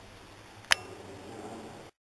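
Faint indoor room tone with a single sharp click about two-thirds of a second in; the sound then cuts off suddenly.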